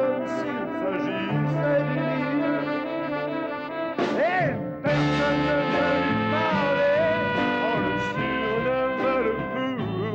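Live band music with a brass section playing held chords, and a male voice singing over it.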